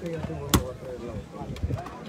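A volleyball struck sharply by a player's hands once, about half a second in, over the steady chatter of a large outdoor crowd.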